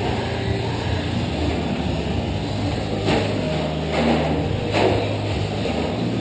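Radio-controlled short-course trucks racing on a dirt track: motors whining up and down as the trucks accelerate and brake, with sharp knocks about three and five seconds in.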